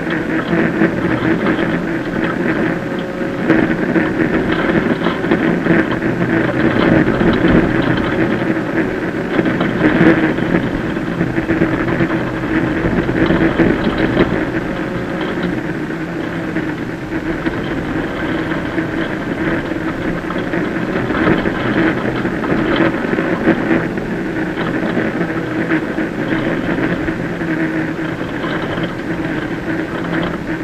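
Citroën C2 VTS rally car's 1.6-litre four-cylinder petrol engine running hard, heard from inside the stripped cabin. Tyre and gravel noise from the loose road surface runs under it, with many short rattles and hits.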